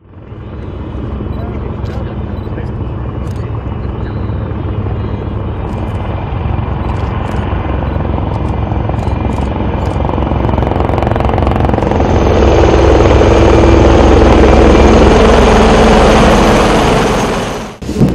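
A formation of military helicopters flying over, their rotors beating over the engine noise. The sound grows steadily louder as they approach and is loudest near the end, then cuts off suddenly.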